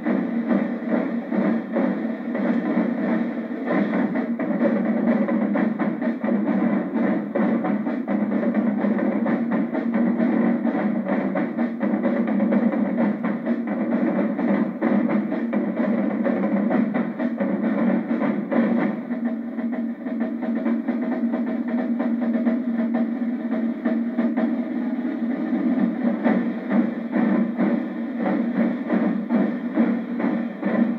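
Marching drumline of snare drums, bass drums, tenor drums and crash cymbals playing together in a dense, continuous rhythm.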